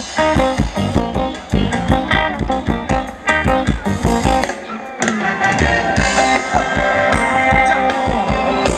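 Live band playing Thai ramwong dance music with a steady beat; the music changes and grows fuller about five seconds in.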